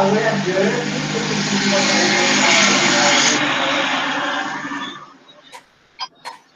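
Loud steady rushing noise with a muffled voice under it, cutting off abruptly about five seconds in, followed by a few sharp clicks.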